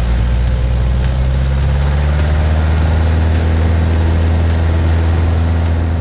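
Piper PA-18 Super Cub's 150-horsepower engine and propeller running steadily as the floatplane rolls along a runway, close to the camera on the wing strut.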